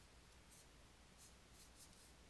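Near silence with a few faint, short scratches of a pen drawing strokes on a writing tablet.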